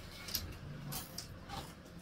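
A few short, faint clicks and rustles of a person shifting and settling back into a chair.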